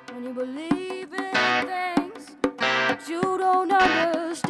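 A boy singing into a microphone while playing a Roland RD-2000 stage piano. His voice comes in about a third of a second in, over short keyboard notes.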